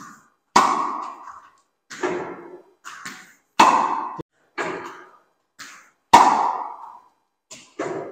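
Tennis balls being struck, about eight sharp knocks at uneven intervals, each ringing out in a reverberant indoor court.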